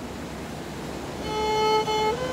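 Hamshen kemenche, a three-string bowed fiddle: a brief pause between phrases, with only a steady hiss, then a bowed note comes in about a second and a half in, is held, and steps up in pitch near the end.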